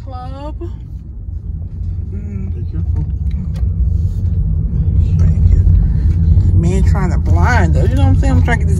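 Road and engine noise inside a moving car's cabin: a steady low rumble that grows louder over the first five seconds or so.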